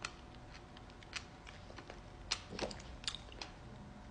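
Close-miked chewing of fruit: soft, irregular wet crunches and mouth clicks, with the loudest few crunches a little past halfway.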